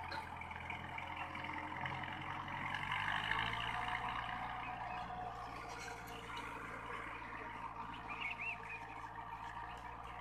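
VST Shakti MT 270 mini tractor's diesel engine running steadily in the background, its pitch shifting slightly about three seconds in. A brief bird chirp near the end.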